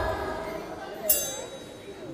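Live band music dying away, then a single bright metallic chime-like strike with a short ring about a second in, leaving a hushed pause.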